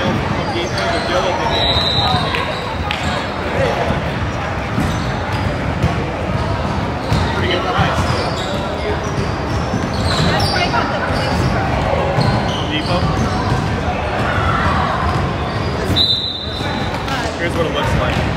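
Basketball game play in a gym: a ball dribbling on a hardwood court amid the knocks and footfalls of players, with voices calling out, reverberant in the large hall. Two brief high squeaks, about two seconds in and near the end.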